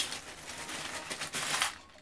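A hand rummaging through a bag of loose Lego bricks: a dense rattle of small plastic pieces clicking against each other, dying away near the end.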